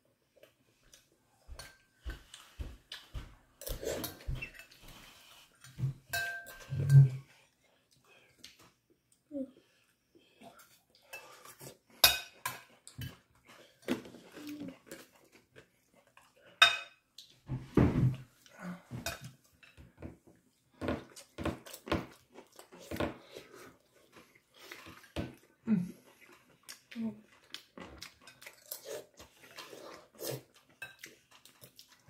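Metal spoon and fork clinking and scraping on a ceramic plate of stir-fried noodles while eating, in many short, irregular clicks.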